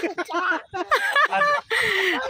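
A person imitating bird calls with the voice: a quick run of short pitched calls, then a laugh near the end.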